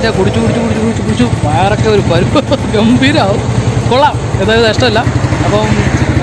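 People talking close to the microphone over the steady low running of a vehicle engine idling.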